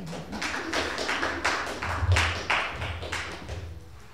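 A short round of applause from a small audience: many quick claps that build up, are loudest about two seconds in, and die away near the end.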